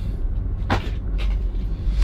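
Low steady rumble of background noise, with one short knock about two-thirds of a second in.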